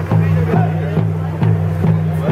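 Music with a steady drumbeat, a little over two beats a second, together with voices, over a steady low hum.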